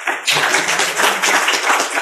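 Audience applauding, a dense steady patter of many hand claps.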